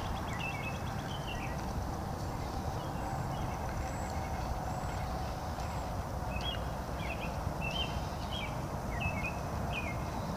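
Songbirds chirping in short repeated phrases, at the start and again through the last few seconds, over a steady low rumble of outdoor background noise.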